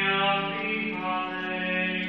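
A lone male cantor chanting into a microphone in a church, holding long steady notes and stepping to a new pitch twice.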